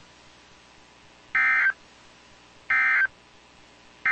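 NOAA Weather Radio EAS end-of-message (SAME 'NNNN') data bursts, which mark the close of the test alert: two short buzzy digital bursts about a second apart, with a third starting at the very end.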